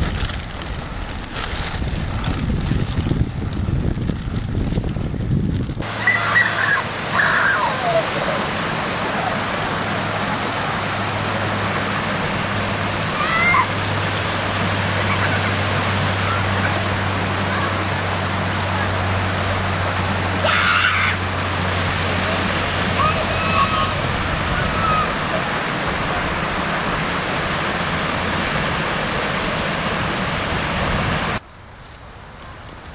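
Wind buffeting the microphone at first. About six seconds in it gives way to the steady rush of water spilling over a small creek weir, with the splash and slosh of a child's BMX bike's wheels riding through the shallow water. A few short high calls sound over it.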